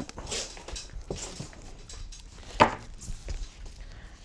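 Handling noise from a guitar cable being pulled and dragged across the floor: scattered light rustles and knocks, with one short, louder sound about two and a half seconds in.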